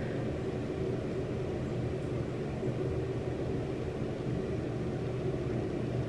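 Steady low hum of background room noise, unchanging throughout, with no distinct events.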